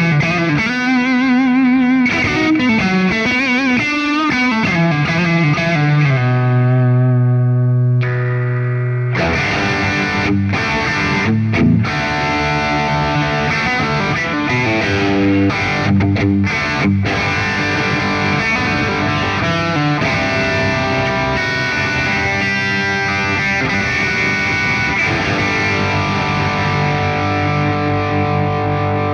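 Fender Telecaster Player Plus Nashville electric guitar played through distortion in a rock style. Bent notes with vibrato and a long held low note sound on the neck pickup first; the guitar then switches to the bridge pickup for fuller, steadier riffing.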